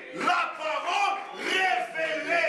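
Loud, raised voice of a man preaching, near shouting.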